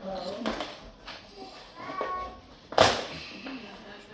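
A single sharp knock or bang just under three seconds in, preceded by a short high-pitched voice-like call.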